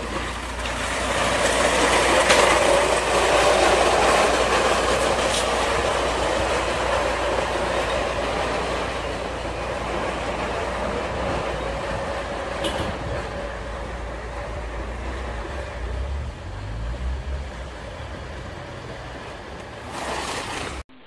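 Plastic crates loaded with glass beer bottles scraping and rattling down a steep paved slope with a man riding on them. The grinding rattle swells over the first few seconds, then slowly fades as the crates slide away.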